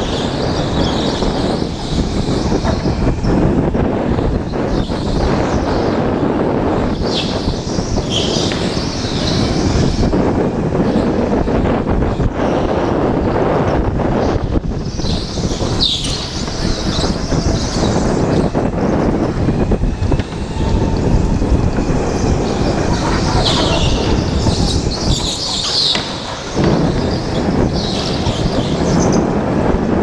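Go-kart running at racing speed with wind on the microphone, its engine and tyre noise steady, and a higher squeal coming and going several times as it corners.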